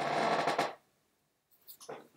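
A short wordless vocal sound lasting about a second, followed by a few faint short clicks near the end.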